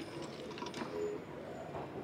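Faint handling noise of a wooden-framed glass display-case lid being lifted open, with a few faint clicks.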